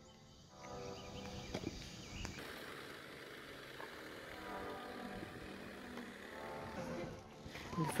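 Faint, distant voices of several people calling and talking.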